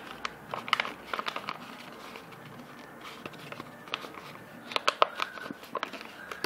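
Folded paper box being handled and pressed into shape: light paper crinkling and rustling with small taps, in two clusters, about a second in and again near the end.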